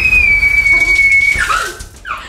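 One long, high-pitched scream, held for about a second and a half and dropping slightly in pitch before it cuts off, as cold water from a handheld shower head is sprayed onto the person.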